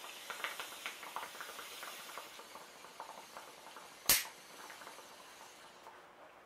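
Ronson butane jet lighter hissing as its flame is held over a glass bong bowl, with rapid small bubbling ticks as smoke is drawn through the water. One sharp click about four seconds in as the lighter is sparked again, then a fainter hiss.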